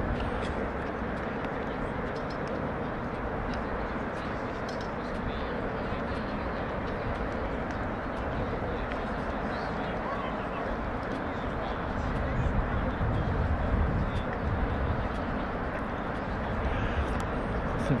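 Steady outdoor background noise with faint, distant voices. A low rumble grows louder about twelve seconds in.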